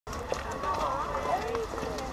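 Several people's voices talking over one another, with no clear words, over a low steady rumble.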